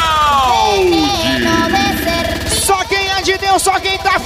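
DJ mix music: a pitched sweep falls steadily for about a second and a half. Near three seconds in, a new beat with short, rapid pitched notes kicks in.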